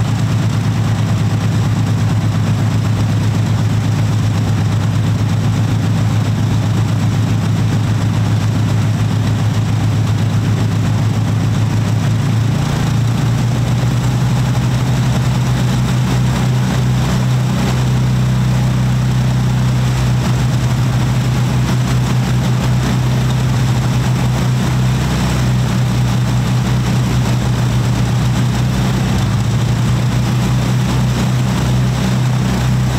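De Havilland Mosquito's twin Rolls-Royce Merlin V12 engines idling with propellers turning: a steady low drone that steps up slightly in pitch about twelve seconds in.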